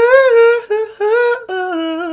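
A man singing a short melody in a high falsetto: about four held notes, the last one lower.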